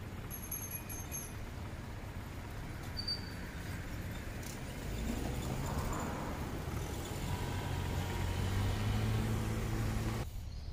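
Low rumble of a motor vehicle engine, growing louder about halfway through and settling into a steady hum.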